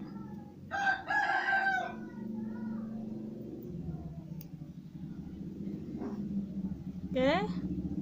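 A rooster crowing once in the background, about a second in and lasting a little over a second, over a low steady hum.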